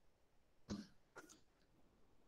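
Near silence, broken by a man softly clearing his throat: two short sounds about half a second apart, the first the louder.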